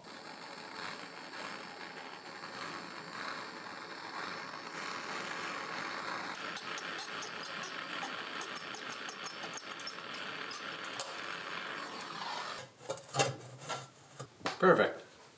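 Hand torch burning with a steady hiss while it heats a soldered copper pipe joint to desolder an end cap, with faint crackling in the second half. The hiss cuts off near the end and a few knocks follow.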